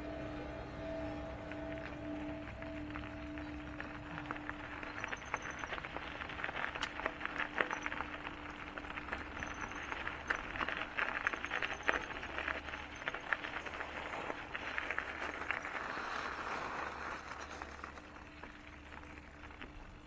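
Mountain bike rolling over a gravel path: tyres crunching and the bike rattling with many small clicks, loudest in the middle and easing off toward the end as the path meets the paved road.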